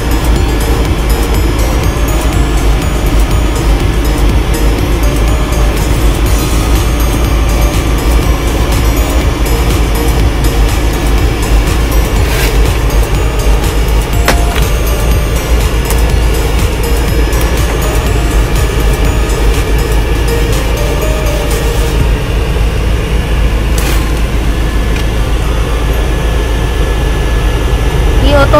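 Newly replaced rear heater blower motor of a van running steadily with the engine idling. The blower is working properly. Music plays along with it.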